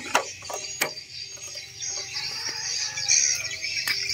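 Kubota single-cylinder diesel engine running quietly at idle, a steady low hum, with three sharp metallic clicks from the radiator filler cap being handled.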